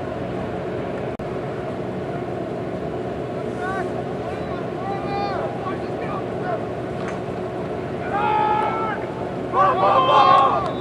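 Steady rushing noise with a low hum under it. People's voices call out faintly around four to five seconds in, and more loudly near the end.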